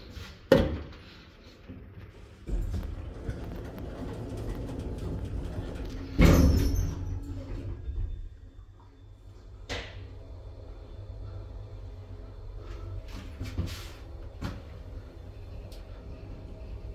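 Passenger lift made by Georgi Aufzugtechnik in operation: a sharp click near the start, the doors shutting with a low rumble and a loud thud about six seconds in, then the car travelling upward with a steady drive hum, a faint whine and a few light clicks.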